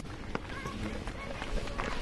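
Faint distant voices and a few light clicks over a low, uneven outdoor rumble.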